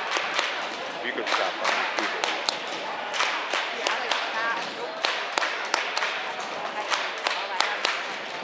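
A group of cheerleaders clapping their hands, sharp claps several a second and not in unison, over a background of chattering voices.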